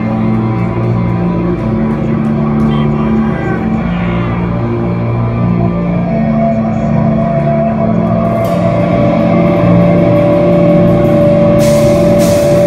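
Live metalcore band playing a slow intro of long, held guitar and bass chords that change every second or two, with a high sustained note joining about halfway. Near the end a cymbal crash hits as the full band comes in.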